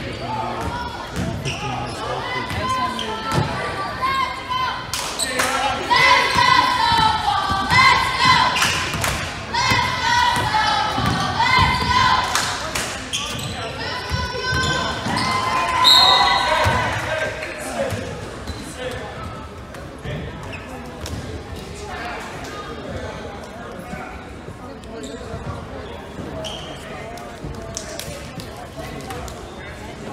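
A basketball bouncing on a gym's hardwood floor during play, in an echoing hall. From about five seconds in, voices call out a chant that repeats roughly every two seconds, loudest near the sixteen-second mark, then die down.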